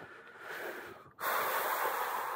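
A person breathing out hard close to the microphone: a soft breath, then a louder rushing exhale starting about a second in.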